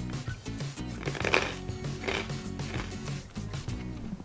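Background music with a steady, stepping bass line, which stops at the end.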